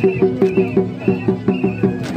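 Live folk music: a barrel hand drum plays a quick, steady rhythm of pitched strokes, with a high held melody line above it in short phrases.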